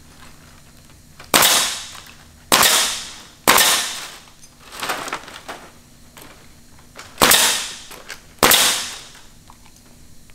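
Pneumatic nail gun firing nails through synthetic thatch ridge shingles into wood framing. Three sharp cracks about a second apart, a softer one, then two more near the end, each trailing off over about half a second.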